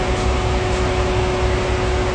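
Steady machine hum holding one constant tone, over an even hiss and an uneven low rumble.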